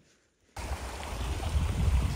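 Near silence for about half a second, then a sudden steady rushing noise with a heavy low rumble: wind buffeting the camera microphone as a mountain bike rolls along a dirt trail.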